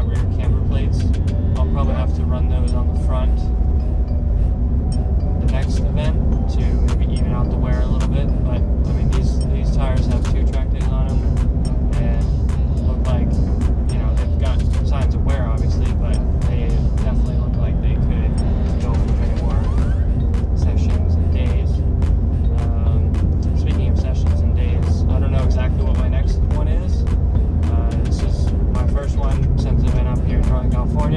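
Music with a steady beat and singing, over the steady low drone of a car cabin on the road.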